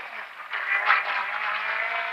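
Rally car engine and road noise heard inside the cockpit at speed, the engine note dipping briefly near the start and then picking back up.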